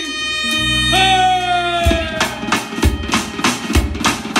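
Armenian folk dance music played live: a clarinet holds a long note that bends slowly downward over a held keyboard bass. About two seconds in, a dhol drum and the band come in with a quick dance beat, with deep drum strokes about once a second among lighter strikes.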